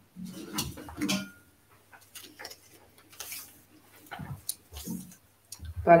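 Quiet scattered clicks and clatter of draw balls being handled in a draw bowl.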